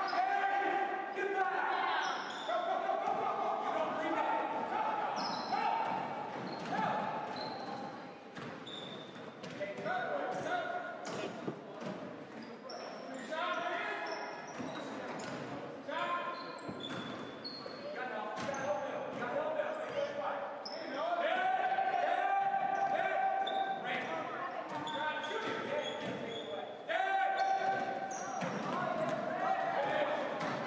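Basketball game in a gym: the ball bouncing on the hardwood floor, with players and spectators calling out, none of the words clear, echoing in the large hall.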